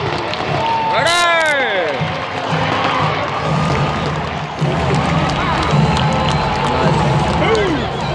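Ballpark crowd: many voices talking and calling out, with a burst of shouts about a second in, over music from the stadium sound system.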